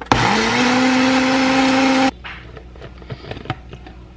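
Ninja countertop blender running a short pulse on liquid aloe vera. The motor spins up with a quick rising whine, runs steadily for about two seconds, then cuts off suddenly, leaving a few faint clicks.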